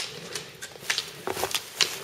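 Roller ski pole tips striking asphalt: a string of sharp, irregular clicks, about six in two seconds, as skiers pole past.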